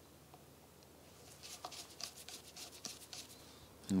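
Faint scratching and light metallic ticks of a screwdriver and gloved fingers working loose the brass emulsion tube holder in a Weber DCOE carburettor, starting a little over a second in and running until just before the end.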